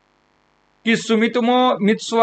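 Near silence with a faint steady hum for the first second, then a man speaking Hindi.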